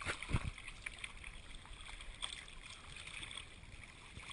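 Choppy bay water lapping and splashing against a surfboard right by the camera, a low irregular wash with small slaps, and a couple of soft knocks just after the start.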